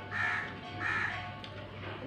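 Two short harsh bird calls, about three-quarters of a second apart, over a low steady hum.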